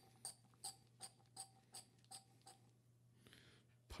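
A run of about eight light, evenly spaced clicks, a little under three a second, that stops about two and a half seconds in, over a faint steady hum.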